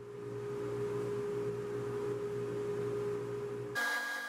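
A woodshop machine running steadily, a constant hum with one clear tone over a noisy whir. It cuts off suddenly near the end.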